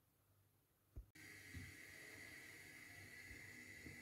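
Near silence: faint room tone with a thin steady whine, beginning with a soft click about a second in.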